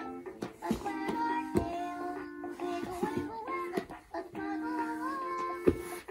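Singing plush puppy doll (LeapFrog My Pal Violet) playing a children's song in a childlike sung voice through its small built-in speaker, the melody running steadily with held notes.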